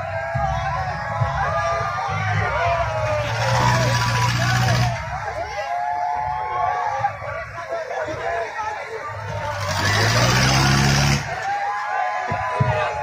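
Swinging-boat fairground ride in motion: riders shouting and screaming over a steady low motor hum. A loud rushing sound swells twice, about four and ten seconds in, and the hum rises in pitch with the second one.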